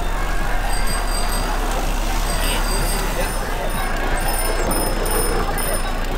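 Group of cyclists riding together at night: a steady rush of outdoor noise with indistinct voices and a low hum, and short, faint high beeps that come and go through the middle.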